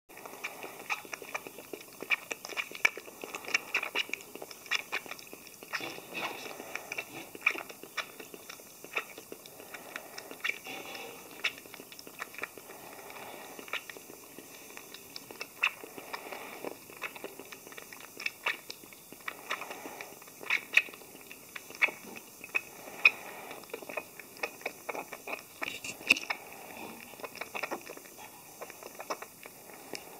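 A month-old masked palm civet kit suckling from a small feeding bottle: rapid, irregular wet clicks and smacks of its mouth working the teat.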